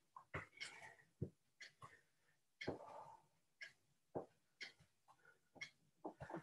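Mostly near silence with faint, short breaths and soft steps from a person doing reverse lunges, a small sound about every half second.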